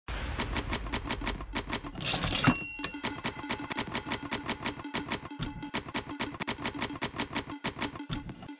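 Manual typewriter keys striking in a rapid run, about six strikes a second. About two seconds in, a brief rush is followed by a short bell-like ring, and then the typing resumes.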